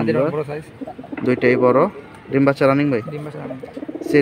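Domestic pigeons cooing, several separate coos, with human voices mixed in.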